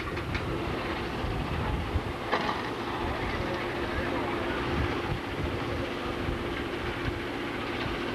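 Freight train switching: a diesel locomotive runs steadily with a constant hum and low rumble, with a few short knocks from the rail cars.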